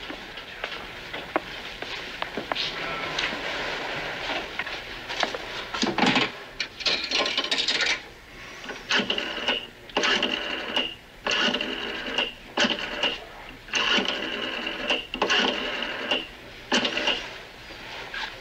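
Rotary-dial pay phone being dialled: the dial whirs and clicks back after each number, about eight numbers in quick succession from about nine seconds in. A few knocks and rattles of the phone being handled come just before.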